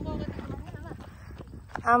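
Faint voices over a low rumble, then a person's voice calling out a drawn-out "oh" near the end.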